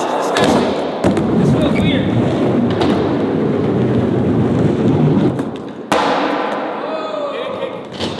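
Skateboard wheels rolling on a smooth concrete floor, a steady rumble that stops after about five seconds. The board clacks near the start and gives a sharp knock about six seconds in.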